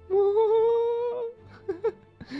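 A person humming one held note for about a second, its pitch rising slightly, followed by two short vocal sounds near the end.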